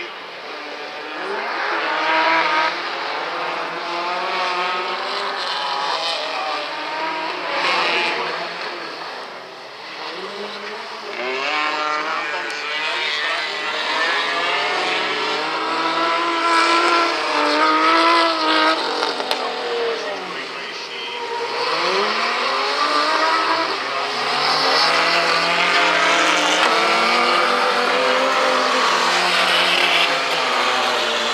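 Several rallycross cars racing on a loose dirt track, their engines revving up and falling back again and again through gear changes and corners, over a hiss of tyres on gravel. The sound swells and fades as the cars come near and pull away.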